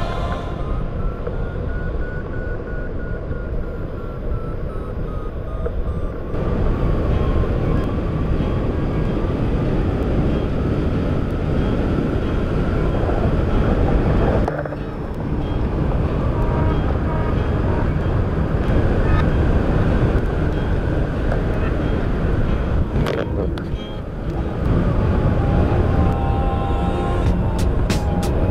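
Steady rush of wind over the camera microphone as the hang glider flies, with two brief dips. In the first few seconds a variometer beeps faintly, its tone rising and then falling in pitch.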